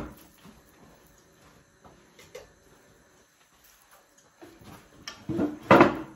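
Quiet room with a few faint clicks, then louder knocks and clatter from household handling near the end.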